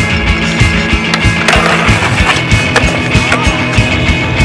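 Skateboard rolling on concrete, with several sharp clacks of the board between about one and three seconds in, over rock music with a steady beat.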